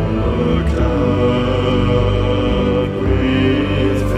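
Background music: slow, deep male voices singing long held notes in a chant-like way over a low drone.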